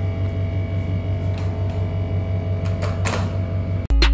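A steady low hum that pulses rapidly, with faint steady tones above it and a few soft clicks. Just before the end it cuts off and louder music begins.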